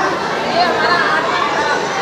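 A woman talking into a microphone over a steady background chatter of many voices in a hall.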